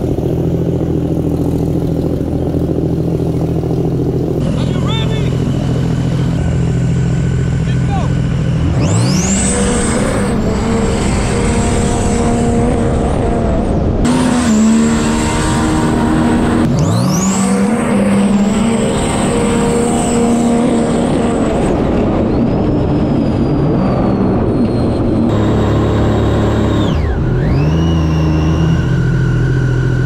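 Supercharged Sea-Doo RXP race jet ski engine, idling steadily at first, then revving up in a rising sweep about nine seconds in and again a few seconds later to a steady high-speed note with a faint high whine. Water and wind rush run under it. Near the end the pitch drops briefly and climbs again as the throttle is let off and reopened.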